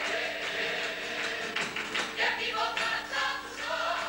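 Rociero choir singing a sevillana live over strummed Spanish guitars.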